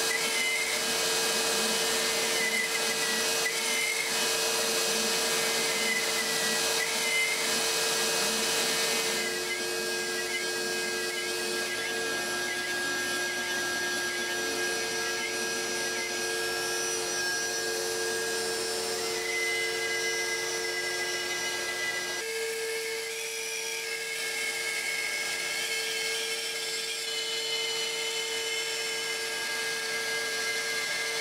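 CNC machine milling hardwood: a palm router spinning a small two-flute carbide bit runs steadily, over the rush of a dust-collection vacuum and a wavering whine from the machine's stepper motors as the gantry moves. The mix changes abruptly about a third of the way in and again about two-thirds of the way through.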